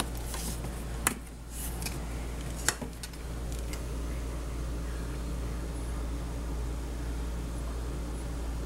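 Two sharp plastic clicks about a second and a half apart, from the flip-top cap of a squeeze bottle of chocolate syrup being opened, over a steady low background hum.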